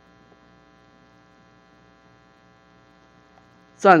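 Faint, steady electrical mains hum, a buzz made of a ladder of even overtones, picked up by the recording chain. A man's voice starts speaking at the very end.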